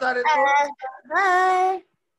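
A high-pitched voice, singing or drawing out its words, ending on one steady held note. The sound cuts off abruptly to dead silence near the end.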